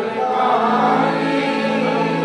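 Group of voices singing a Hindi devotional bhajan in chorus, over steady held notes.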